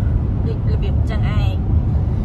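Steady low road-and-engine rumble heard inside the cabin of a moving car, with a person talking over it.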